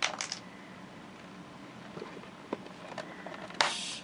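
An EpiPen auto-injector fires with one sharp click near the end, followed by a brief hiss. A few fainter plastic handling clicks come before it.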